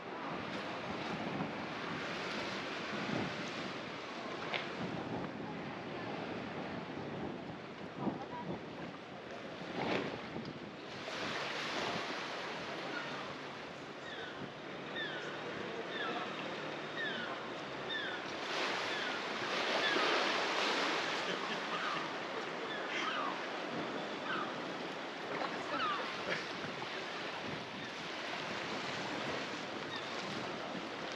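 Small waves washing onto a sandy harbour beach with wind on the microphone, swelling a little past the middle. Over it, a run of short, high chirps repeats in the second half.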